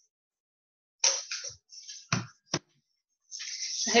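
Handheld paper hole punch cutting through the rim of a paper cup: papery rustling and crunching about a second in, then two sharp clicks about half a second apart.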